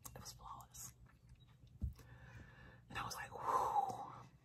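A woman's breathy, whispered vocal sounds without clear words: a short one near the start and a longer, louder one in the last second. A brief low thump comes just before the middle.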